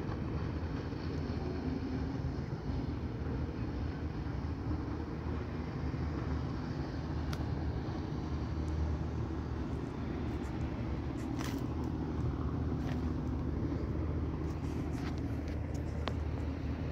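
Steady low outdoor rumble with a few light ticks scattered through it.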